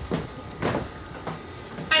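Handheld microphone being handled, with a couple of short rustling scrapes over steady room noise.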